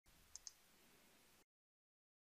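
Near silence with faint microphone hiss and two quick clicks of a computer mouse button, a press and release, about a third of a second in.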